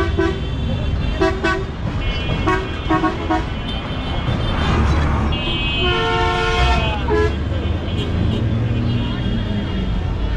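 Road traffic with vehicle horns: a run of short toots in the first few seconds, then a longer horn blast about six seconds in that drops in pitch as it ends, over a steady low engine rumble.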